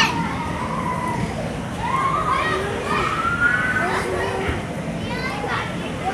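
Young children's high voices calling and squealing while they play, with long drawn-out calls that rise and fall in pitch.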